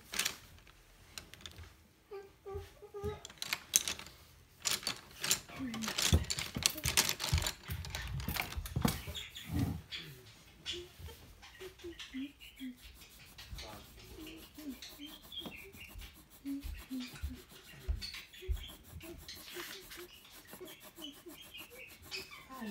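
Wooden coloured pencil scratching quickly back and forth on workbook paper as a page is coloured in, after a run of knocks and clatter in the first half.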